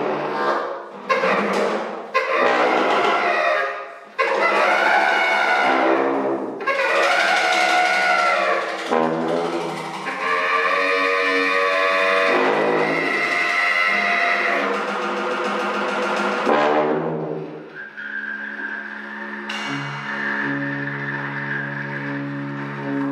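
Free-improvised jazz: loud horns play bending, swelling pitched lines over snare drum and cymbal played with sticks. The loud horn line fades out about three-quarters of the way through, leaving steady low held notes.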